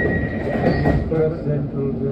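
Elizabeth line Class 345 train running, heard from inside the carriage: a steady rumble with a thin high whine that cuts off about halfway through. Indistinct voices sit over it in the second half.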